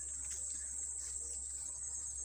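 Steady high-pitched insect chorus, a continuous trilling drone from the surrounding vegetation, over a low steady hum.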